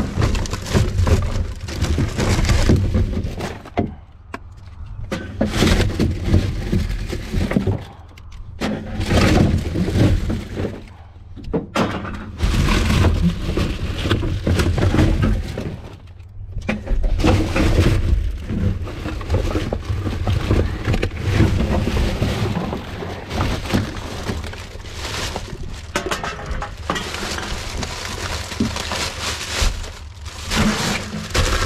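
Gloved hand rummaging through rubbish in a plastic wheelie bin: plastic wrappers, cardboard packaging and bags crinkling and rustling in bursts with short pauses, over a steady low rumble.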